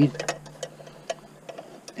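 A few light, irregular clicks from an EarthWay push garden seeder being handled, its plastic hopper and wheel-driven seed-plate mechanism ticking.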